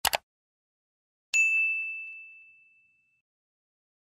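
Subscribe-button animation sound effect: a quick double mouse click, then about a second later a single high bell ding that rings and fades away over about a second and a half.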